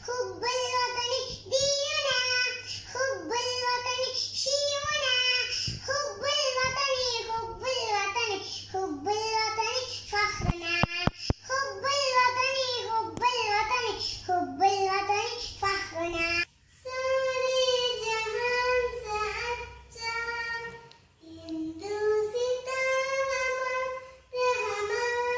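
A young girl singing a patriotic song solo, with no accompaniment, in held, sung notes. About two-thirds of the way through, the sound cuts and another young girl carries on singing.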